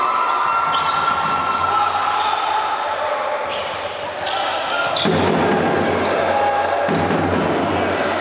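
Basketball dribbled on a hardwood court during live play in a large sports hall, with voices from players and the crowd throughout.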